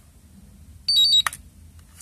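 IMAX B6 LiPo balance charger beeping: one short, high beep of two quick tones about a second in, with a brief click right after. It is the charger's signal that Start/Enter has been held and it has begun its battery check before charging.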